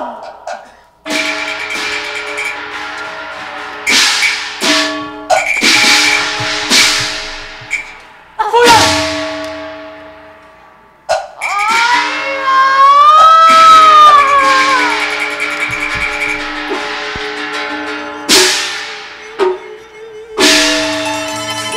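Cantonese opera accompaniment: repeated cymbal and gong crashes that ring off, over sustained instrumental tones, with a wavering melodic line that rises and falls near the middle.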